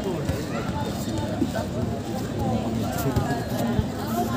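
Voices talking and calling, with a few sharp thuds of footballs being kicked, the loudest near the end.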